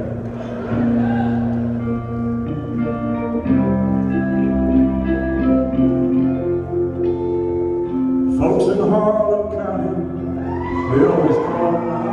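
Live country band playing in a hall: electric guitars and drums, with long held chords through the middle, then a voice joins briefly near the end.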